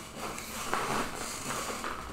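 Quiet room tone with a few faint soft sounds, in a lull between speech.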